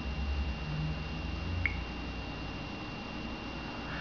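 A single short tap blip from the Samsung Wave phone's touchscreen, about one and a half seconds in, as the on-screen dialog is answered. It sits over quiet room tone with a faint steady high whine.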